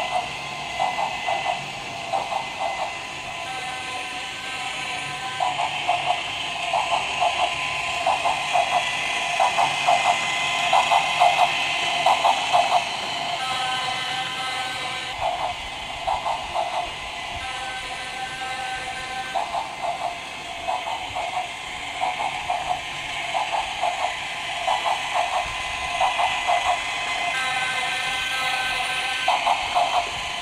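A battery-powered plastic toy train running round its plastic track, with a steady whirring hiss and rhythmic chugging pulses. A held steady tone sounds for about two seconds, four times.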